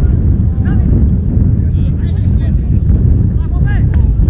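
Wind buffeting the camera microphone, a loud steady low rumble, with brief distant shouts from the pitch several times over it.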